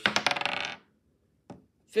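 A twenty-sided die rolled for an attack, clattering rapidly for under a second before coming to rest, with one faint tick about a second and a half in.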